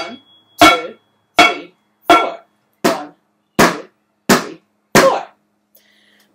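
Wooden spoons beating a home-made kitchen drum kit of upturned pans, dishes and a metal colander: a steady beat of eight strikes, about one every three-quarters of a second, counted out in fours. The first hit leaves a thin high metallic ring hanging for over a second.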